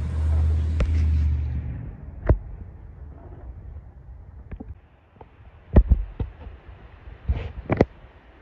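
Wind rumbling on the microphone for about two seconds, then a quieter stretch with a few sharp knocks, the loudest about six seconds in and two more near the end.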